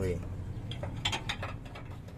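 A quick, irregular run of light metallic clicks from hand tools unbolting a shock absorber.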